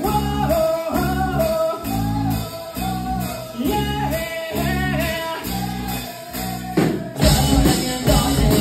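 Live pop-punk band: male vocals over electric guitar chords and drums, the chords coming in short pulses about once a second. Just before seven seconds in a drum hit leads the full band into a louder, denser section.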